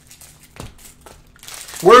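Cellophane wrapper of a Panini Prizm cello card pack crinkling in the hands in a few short, faint spells. A man's loud voice starts near the end.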